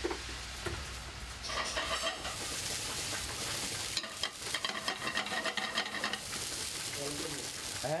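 Rice frying in a hot pan, sizzling loudly with many small crackles.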